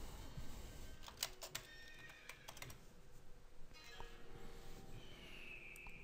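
Faint scattered clicks of a computer mouse and keyboard while charting software is worked, with a cluster of clicks about a second in. Thin faint tones sound in the background.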